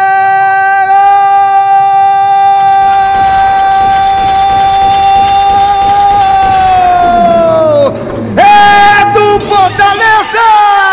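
Football commentator's long drawn-out goal cry, one loud high note held steady for about eight seconds that then falls in pitch and breaks off. A second, wavering shout starts near the end.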